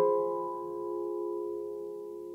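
Background music: a single piano chord ringing on and slowly fading.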